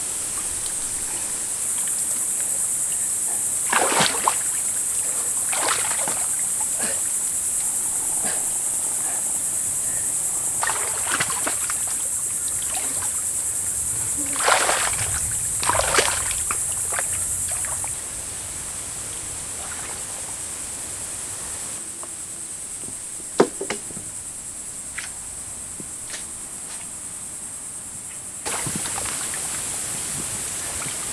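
Muddy water splashing and sloshing as a man heaves at a buffalo carcass in a shallow wallow, in a few separate surges, the biggest about four seconds in and around fourteen to sixteen seconds in. A steady high-pitched insect drone runs underneath.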